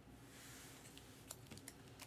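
Near silence with a few faint, light clicks in the second half: hands handling trading cards in hard plastic holders on a tabletop.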